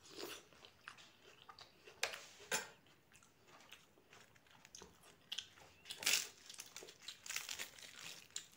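Close-miked chewing of a forkful of chickpea curry and raw onion, with short crisp crunches at irregular intervals. Near the end, a fried puri is torn by hand.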